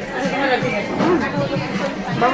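Chatter of several people talking at once in a restaurant dining room.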